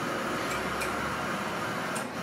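Steady hiss of radio receiver static while no signal is yet received from the Soyuz, with faint clicks about half a second and just under a second in.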